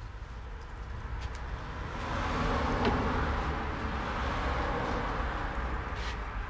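Road traffic noise: a steady low rumble, with a vehicle's tyre and engine noise swelling about two seconds in and staying up. There is a light knock near the middle.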